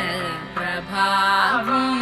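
Carnatic-flavoured Telugu film song music, with chant-like melodic lines and a note held steady from about one and a half seconds in.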